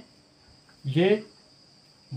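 Steady, high-pitched chirring of insects in the background.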